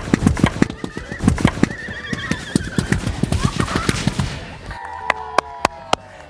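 A chain of methane-filled balloons igniting one after another: a fast run of sharp pops, several a second, for about four and a half seconds, then a few last scattered pops. Voices call out over it.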